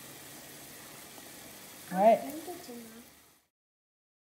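Kitchen faucet running a stream of tap water into a nearly full metal mixing bowl, a steady hiss that cuts out about three and a half seconds in.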